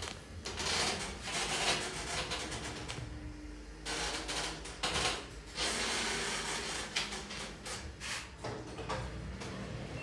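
Stannah glass passenger lift travelling upward, its cab very rattly: a low running hum with frequent loose rattles and clicks throughout the ride.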